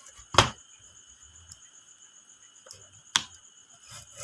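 Two sharp mechanical clicks from a FEED 63 A two-pole automatic transfer switch as its changeover mechanism is operated by hand, the breakers snapping over about half a second in and again a little after three seconds in.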